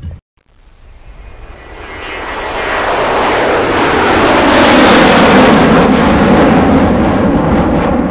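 Wind rushing past a car's open side window while driving. It builds steadily over the first few seconds as the car picks up speed, then stays loud.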